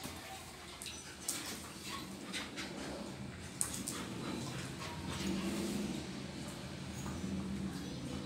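Two dogs play-fighting: scuffling and mouthing, with two sharp clicks in the first half and low growling that builds over the second half.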